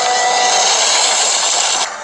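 A loud, steady hissing rush of noise that cuts off abruptly near the end.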